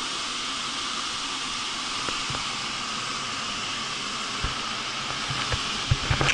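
Steady hiss of air movers blowing heated air through the room during a bed bug heat treatment, with a few faint low knocks.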